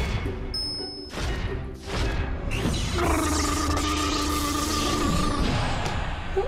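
Music with sound effects marking a transformation: brief high tones early on, then a loud rushing noise from about two and a half seconds in, with two held tones running through it for a couple of seconds before fading near the end.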